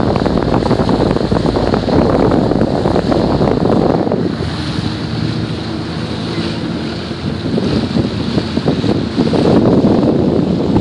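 Wind buffeting the microphone on a moving boat, with water rushing past the hull. About four seconds in the wind eases and a low steady hum from the boat comes through, until the wind picks up again near the end.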